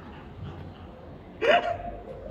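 A woman's short startled cry, one brief high yelp about one and a half seconds in, her reaction to being jumped out at.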